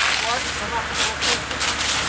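Smouldering charred timbers of a burnt-out wooden house crackling and hissing, with indistinct voices in the background.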